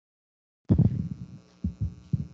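Dead silence, then about two-thirds of a second in the line opens abruptly on a low buzzing hum with a few short low sounds, as a muted microphone comes back on.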